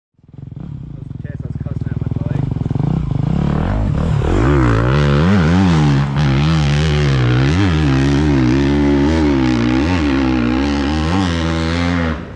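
Honda CRF250RX dirt bike's four-stroke single-cylinder engine climbing a steep hill under load, growing louder over the first few seconds, then revving up and down over and over as the rider works the throttle up the slope.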